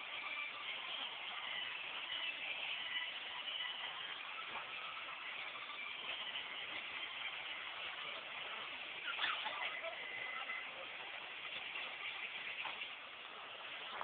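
Steady, dense background din of a busy mall, with one sharp knock about nine seconds in.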